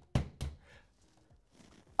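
Hammer knocking twice in quick succession, about a third of a second apart, while fixing a name plaque to a wall, then stopping.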